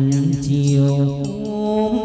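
Chầu văn (hát văn) ritual music: a long chanted note is held steadily, stepping up in pitch a little over halfway through.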